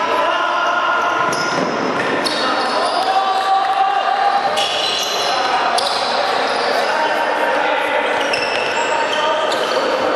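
Futsal play in a sports hall: shoes squeaking on the court floor, a few sharp ball kicks and players shouting, all echoing in the hall.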